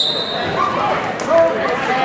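Referee's whistle blast fading out in the first half second as the wrestling bout starts, then shouting from coaches and spectators.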